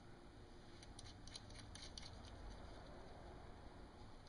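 Faint, light clicking of small metal parts being handled: a wire's ring terminal being fastened onto the screw under a stainless boat cleat, with a run of clicks about a second in.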